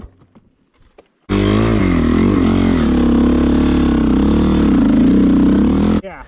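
After about a second of near quiet, a Honda CRF450R's single-cylinder four-stroke dirt-bike engine is heard idling. Its pitch wavers briefly at first, then settles into a steady idle.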